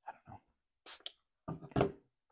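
A man's short, wordless murmured vocal sounds, loudest near the end, with a brief breathy hiss about halfway through.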